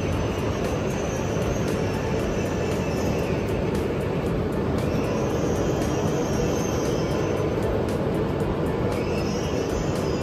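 JR East E5 series Shinkansen train moving slowly along the platform: a steady rumble of wheels and running gear, with faint high tones rising and fading.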